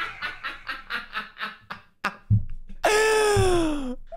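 A man laughing hard in quick, fading bursts over the first two seconds. A low thump follows, then one long falling tone near the end.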